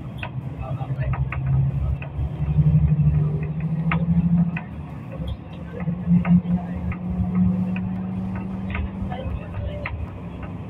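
Vehicle engine rumbling in traffic, heard from inside a moving vehicle, its note climbing twice with a drop about halfway through, along with scattered light rattles and clicks.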